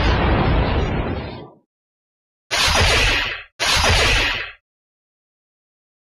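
Kamen Rider Desire Driver finisher sound effects: a blast from the strike attack fades out within the first second and a half. Then come two short bursts of noise, each about a second long and back to back, each starting sharply and tailing off.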